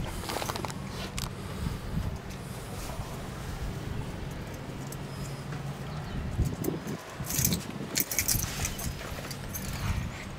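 Handheld-camera handling noise and faint movement over a steady low hum, with a short run of metallic clicks and jingles, like keys, about seven to eight seconds in.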